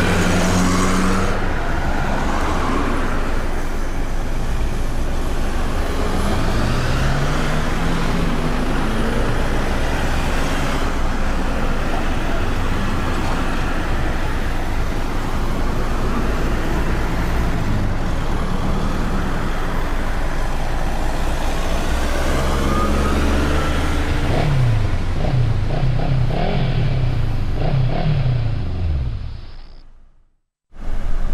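Road traffic on a city street: a steady rush of passing cars and heavier vehicles, with engine notes rising and falling as they pull away. The engine notes are busiest near the end, and the sound then fades out quickly.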